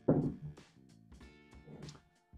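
A cast iron skillet set down on a wooden tabletop with one thunk right at the start, which fades over about half a second, over quiet background guitar music.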